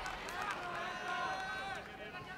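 Voices shouting and calling out across a kickboxing arena during the fight, over a faint crowd murmur.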